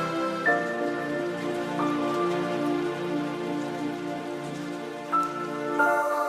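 Ambient background music: sustained, layered synth chords over a soft hiss. The chord changes about half a second in and again just before the end.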